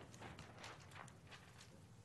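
Faint, irregular rustling and light taps of large paper plan sheets being handled.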